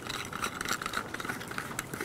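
A plastic angle-head flashlight being handled in the hands: faint scratching, rubbing and small irregular clicks.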